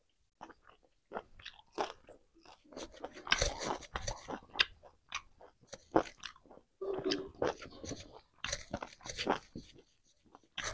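Close-miked eating: irregular chewing and crunching of fried pork, rice and greens, with short wet clicks and smacks of the mouth, quiet for the first second.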